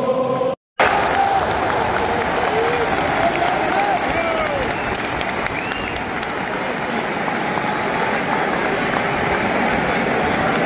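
Large stadium crowd applauding: dense, steady clapping with scattered shouts over it. Crowd singing cuts off with a brief dropout just under a second in, and the clapping follows.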